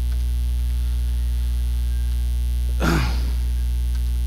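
A steady electrical mains hum throughout, with a single short cough from a person about three seconds in.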